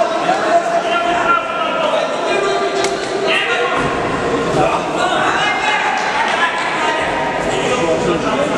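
Voices calling out in a large indoor hall around a cage fight, with one sharp smack about three seconds in.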